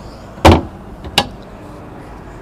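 A boat's deck dry-box hatch lid being shut with one solid thump about half a second in, followed by a smaller sharp click from its ring-pull latch.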